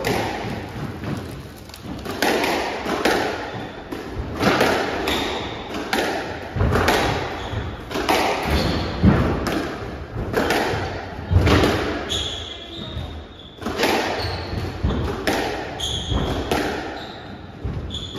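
Squash rally: the ball cracks off rackets and the front and side walls again and again, roughly every half second to a second, echoing in the enclosed court. Short high squeaks from players' shoes on the wooden floor come in through the second half.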